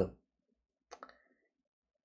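Two faint, short clicks close together about a second in, with quiet around them.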